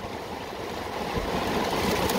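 Heavy rain falling on a car's roof and windshield, heard from inside the cabin as a steady hiss, while the windshield wipers sweep. A brief low thud comes about a second in.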